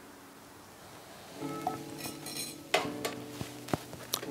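Steel bar tools, a jigger and shaker tin, clinking: a few sharp metal clinks in the second half as the measure is tipped and set down, over soft background music.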